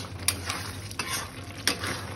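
Metal spatula stirring thick chicken curry gravy in a metal kadai, scraping and knocking against the pan about every two-thirds of a second, with the gravy sizzling underneath.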